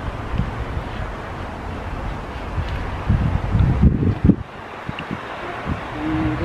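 Wind buffeting the microphone: a low, rumbling noise with stronger gusts about three to four seconds in, easing off after.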